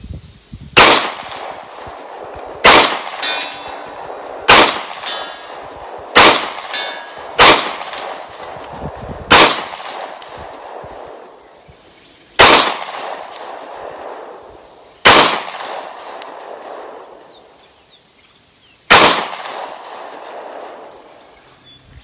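Nine pistol shots fired slowly at an uneven pace, one to three seconds apart, with a longer pause before the last. A few of the shots are followed by a faint ringing that fades away.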